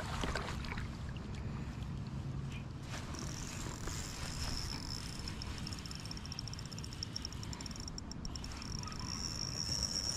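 An insect's steady high-pitched buzz sets in about three seconds in and keeps going, over a low background rumble.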